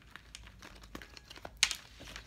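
Tarot cards being shuffled by hand: a run of light, quick clicks and flicks of card on card, with one sharper, louder snap about one and a half seconds in.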